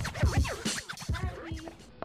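Hip hop music with turntable scratching: quick record scratches sweeping up and down in pitch over a fading beat, cut off abruptly near the end.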